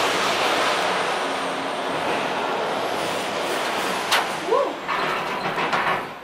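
Gondola cable car station machinery running steadily as the gondolas roll through the terminal, with a sharp clack about four seconds in and a brief rising-and-falling tone just after.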